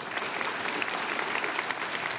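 A large audience applauding: many people clapping steadily together.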